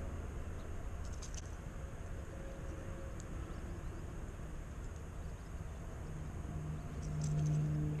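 Fishing reel being wound in while a hooked white bass is brought to the bank, with a steady low hum that grows louder in the last couple of seconds.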